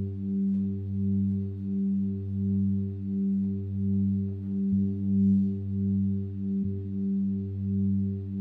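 Electronic keyboard holding one low, sustained synth note that swells and fades evenly, about three pulses every two seconds.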